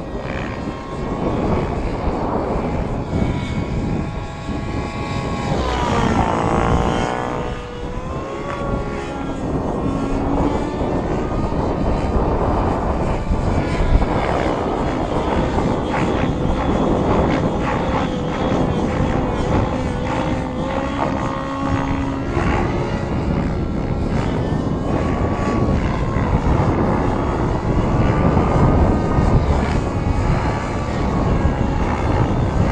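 Align T-REX 700N nitro RC helicopter in flight: its YS 91SR-X glow engine and rotor blades running hard. The engine note swings up and down in pitch as the helicopter manoeuvres and passes, most sharply a few seconds in.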